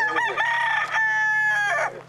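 Rooster crowing once: a full cock-a-doodle-doo of a few short notes, then one long held note that drops away at the end.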